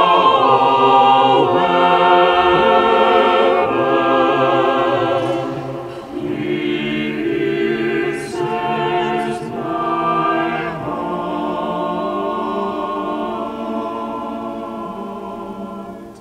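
Mixed church choir of men's and women's voices singing a hymn in long, sustained phrases, with a brief break about six seconds in; the singing fades and ends near the end.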